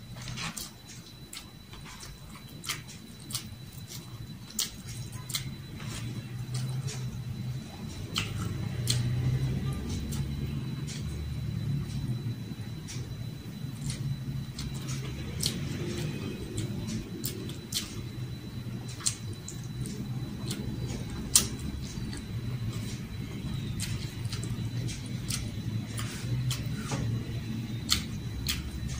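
Close-up eating sounds: chewing with many sharp wet mouth clicks and smacks as rice, egg and hotdog are eaten by hand. A low sound runs underneath and grows louder from about eight seconds in.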